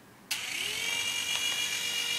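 Brookstone toy RC helicopter's small electric rotor motors switching on about a third of a second in, spinning up quickly and settling into a steady high whine.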